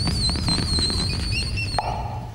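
A transformation sound effect: a high, wavering whistle-like tone over a low rumble with crackling clicks. It cuts off near the end.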